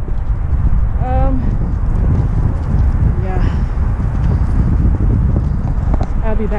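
Strong wind buffeting the microphone: a loud, heavy rumble. Brief snatches of a woman's voice come through about a second in and again past three seconds.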